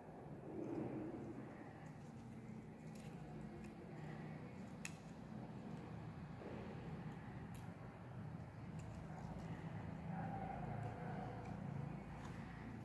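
Faint low background hum with a few soft clicks of thin paper being folded and handled.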